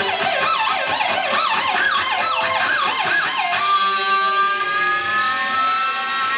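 Stratocaster-style electric guitar played as a live solo through an amplifier: a fast run of repeating swooping notes, then about three and a half seconds in a single long sustained high note with a slight slow rise.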